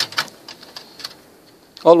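A handful of small sharp clicks and taps in the first second as a memory module is handled and pressed into the RAM slot of an HP ENVY 23 all-in-one computer.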